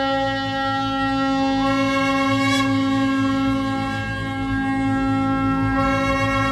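A conch shell (shankha) blown in one long, steady, horn-like note, held unbroken over a low rumble in devotional title music.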